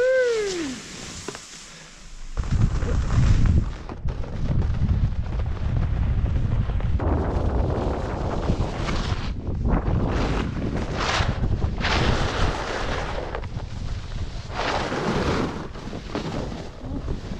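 Wind buffeting the microphone during a fast snowboard run, a heavy rushing rumble, with the snowboard scraping over packed snow in surges from about seven seconds in. A brief falling-pitched call right at the start.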